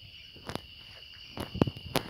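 Steady, high-pitched chirring of insects, with a few sharp footsteps on stone, loudest in the second half.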